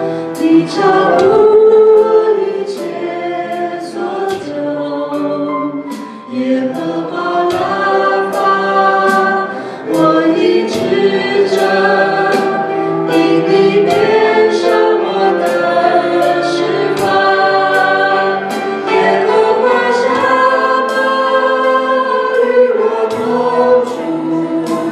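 A worship team of women's and a man's voices singing a praise song together, with keyboard accompaniment and regular drum or cymbal hits keeping the beat.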